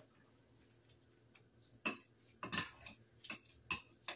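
A spoon stirring sliced pork in a ceramic bowl, mixing in the cornstarch marinade, with four or five short clinks against the bowl from about two seconds in.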